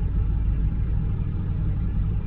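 Steady low rumble of a vehicle engine idling, heard from inside the cab.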